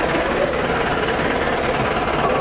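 Steady din of an idling vehicle engine, with the voices of a crowd faintly underneath.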